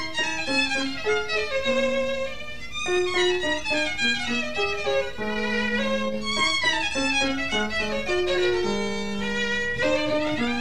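Solo violin playing a concerto melody with piano accompaniment, moving through quick runs of notes with a few longer held notes.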